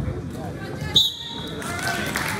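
Referee's whistle blown once, a short shrill blast about a second in, over voices in the gym.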